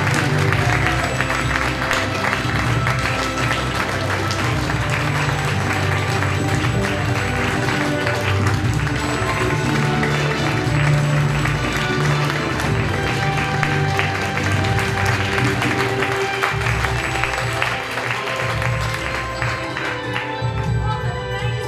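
Audience applauding a curtain call, with music playing underneath. The clapping stops near the end while the music carries on.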